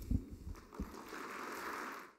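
Audience applause starting after a speech ends, as an even clapping noise that holds for about a second and then cuts off suddenly. A few dull thumps come early on, from papers being handled at the podium microphone.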